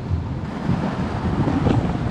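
Wind buffeting a handheld camera's microphone outdoors, an uneven low rumble.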